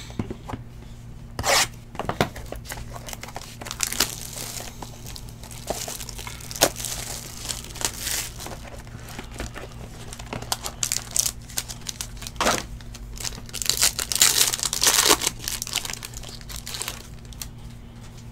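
Plastic shrink-wrap being torn and crinkled off a boxed set of trading cards, with scattered rustles and clicks as the box is handled and opened; busiest a few seconds before the end.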